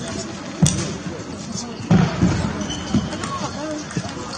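Table tennis ball clicking off bats and the table during a practice rally, a few sharp hits, with voices chattering in the background of a large hall.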